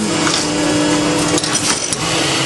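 Blow moulding machine running: a steady hum over constant machinery noise, the hum stopping partway through, followed by a few clicks and knocks.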